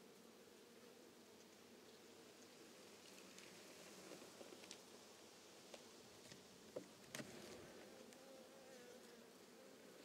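Faint steady buzzing of honeybees around an open hive, with a few light clicks about seven seconds in as frames are worked loose.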